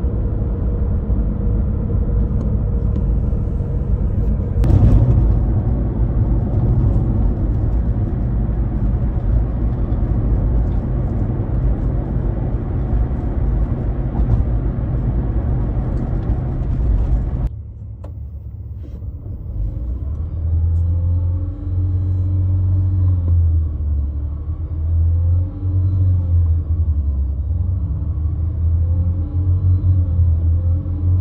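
Car driving on a road, heard from inside the Toyota's cabin: a steady low road and tyre rumble, with a single thump about five seconds in. After about 17 seconds the sound cuts abruptly to the engine running with its pitch rising and falling again and again as the gas pedal is pumped.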